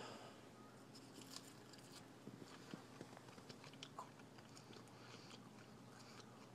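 Faint crunching as a raw lettuce leaf is bitten and chewed: a scattering of soft, crisp clicks.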